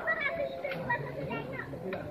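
Overlapping voices of children playing, calling out and chattering, with several voices at once, some high and some lower.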